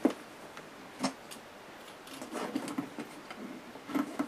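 A few light clicks and taps as the hinged chipboard doors of a handmade storage cabinet are closed and pressed shut: one at the start, two more about a second in, and another at the end.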